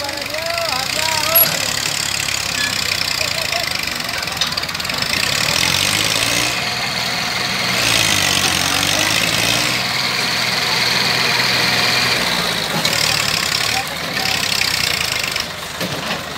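Small Massey Ferguson diesel tractor engine working hard under load as it strains to pull a stuck, heavily loaded sugarcane trolley. The engine note climbs from about six seconds in, holds higher to about twelve seconds, then eases. Short shouts come near the start.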